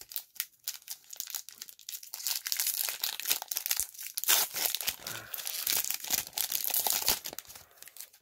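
A Magic: The Gathering Kaldheim draft booster pack's wrapper being torn open and crinkled by hand, a dense run of crackling that grows loud about two seconds in and dies away just before the end.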